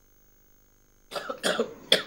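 About a second of silence, then a man coughs twice, short and light, just before he speaks.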